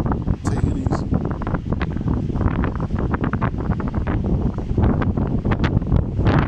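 Wind buffeting a phone's microphone: a loud, uneven low rumble that gusts throughout.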